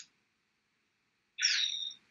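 Mostly silence on a video-call line, with a tiny click at the start. About one and a half seconds in comes a short intake of breath, rendered by the call audio as a half-second hiss with a thin, chirpy tone.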